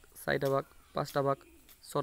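A person's voice speaking short, separated words with pauses between them.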